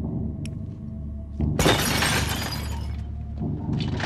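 A loud shattering crash about a second and a half in, lasting over a second, over a low steady hum; sharp clattering starts near the end.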